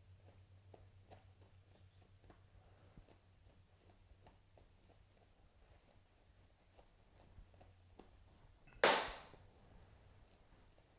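Faint small clicks and snips of a blade cutting along the wet tail feather quills of a pheasant. Near the end comes one sudden short rush of noise that fades within about half a second.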